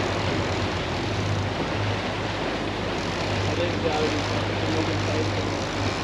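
Triple outboard motors running steadily as the boat moves slowly ahead, a constant low drone mixed with wind and the rush of water from the wake.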